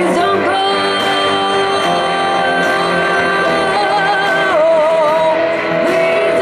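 A live band playing, with a woman singing long held notes with vibrato over guitar accompaniment.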